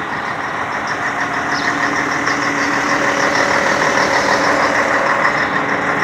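Scania 113H truck's diesel engine idling steadily, growing slightly louder toward the end.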